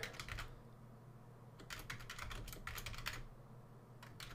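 Faint typing on a computer keyboard: a few keystrokes, a short pause, then a quick run of keys.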